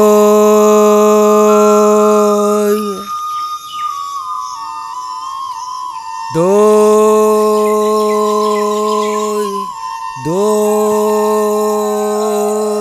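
A man's drawn-out hawker's cry selling curd, 'doi… bhalo doi', each call held on one steady note for about three seconds. The first call ends about three seconds in, and two more follow near the middle and the end. Between the calls a thin, wavering flute-like melody carries on.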